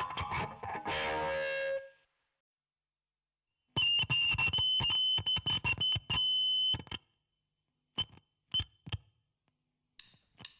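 Rock music from a noise-rock CD. One track ends and cuts off about two seconds in. After a short silence, the next track opens with a distorted, effects-laden electric guitar playing choppy, stop-start phrases, then a few short stabs near the end.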